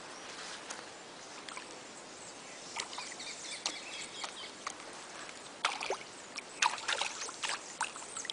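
Faint outdoor background of shallow water lapping, with light rustles and clicks that come more often after about five and a half seconds.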